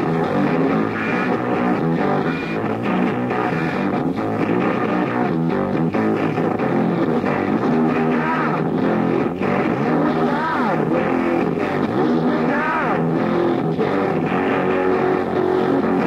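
Lo-fi punk rock demo recording: a band playing with electric guitars, dull and muffled like a worn bootleg tape, with a few sliding, bent notes near the middle.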